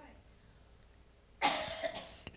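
A man coughs once, close to a handheld microphone, about one and a half seconds in.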